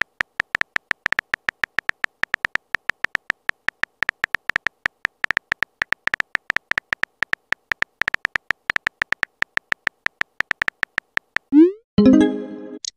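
Phone keyboard typing sound effects from a texting app: quick electronic key ticks, about five a second, each with a faint high ring. Near the end a short rising swoosh sounds as a message is sent.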